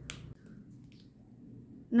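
One light click near the start from handling a plastic drink sachet and scissors, then quiet room tone.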